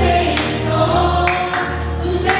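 A roomful of people singing together to music, with held notes over a steady low accompaniment and sharp hand claps about once a second.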